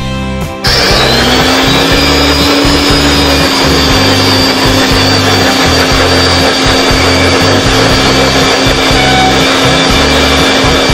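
Electric blender motor starting about a second in, its pitch rising as it spins up, then running at a steady high whine while blending liquid fruit juice.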